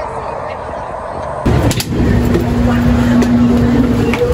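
Street traffic noise at a bus stop, then after a cut about a second and a half in, the louder low rumble of a city bus being boarded. A single steady tone is held for about two seconds near the end.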